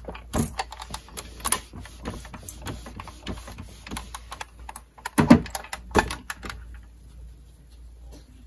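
A steam iron and hands working folded cotton fabric on a padded ironing board: a run of small clicks and knocks, with two louder thumps about five and six seconds in.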